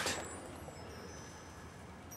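Quiet background with a faint steady hiss and a faint high whine, and no distinct event.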